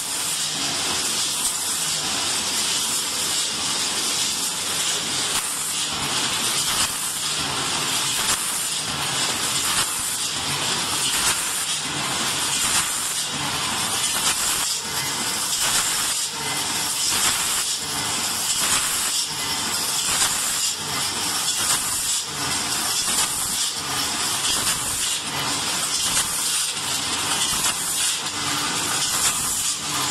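Rotary premade-pouch filling and sealing machine running: a steady hiss with faint, regularly repeating clacks from its working stations.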